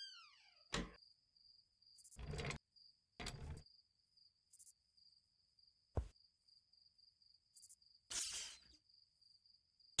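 Sparse, quiet sound effects: a few soft thumps and brief rustling noises, with a sharp click about six seconds in, over a faint steady high tone.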